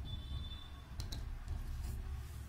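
Two quick small clicks a little after a second in, from jumper wires being handled at an Arduino Uno's header pins, over a steady low hum.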